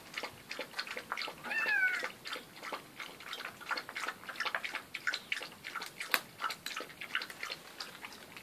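A cat meows once about a second and a half in, a short call that rises then falls. Throughout there is a rapid, irregular clicking of dry kibble being crunched as a dog and the cat eat from the same bowl.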